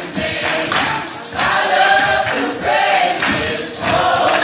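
Live ensemble of many voices singing a gospel song together, with rhythmic hand clapping keeping the beat.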